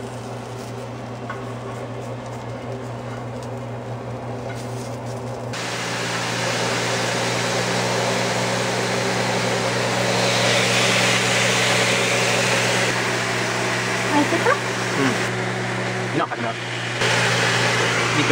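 Food sizzling in a frying pan over a steady low hum: quieter at first, with eggplant slices frying, then sliced raw beef sizzling louder from about five seconds in, at its strongest around ten seconds in as more slices go into the pan.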